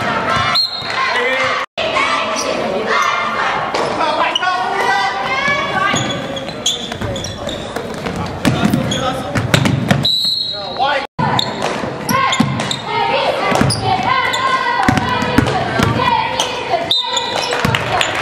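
Basketball game sound in a gymnasium: many voices of players and spectators shouting and talking over one another, echoing in the hall, with the ball bouncing on the hardwood floor. The sound cuts out for an instant twice where clips are joined.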